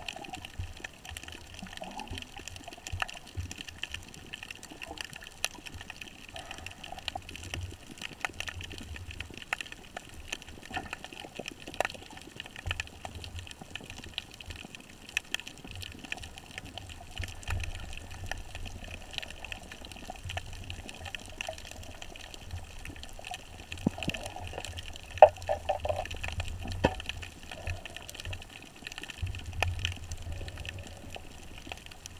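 Underwater sound picked up by a GoPro in its waterproof housing: a steady muffled water hiss and low rumble, sprinkled with faint clicks and crackles, with one sharper click about five seconds before the end.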